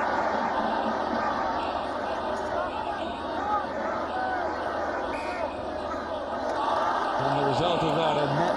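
Stadium crowd noise: many spectators calling out and shouting at once in a steady mass of voices during play near the try line.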